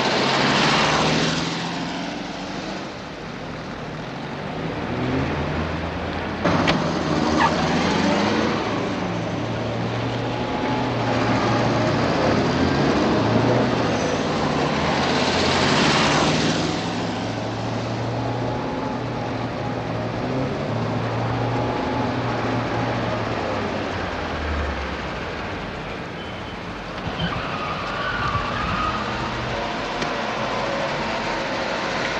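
Car engines running as cars drive through city streets, a steady low hum that changes pitch now and then. Three swells of traffic noise rise and fade as vehicles pass: one near the start, one about seven seconds in, and one about sixteen seconds in.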